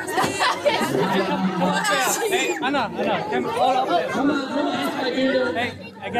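Several people talking over one another at once, a close, busy chatter of voices.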